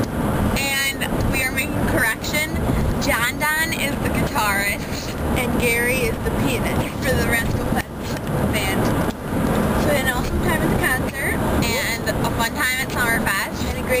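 Girls' voices, talking and singing, inside a moving minivan, over steady road and engine noise from the cabin.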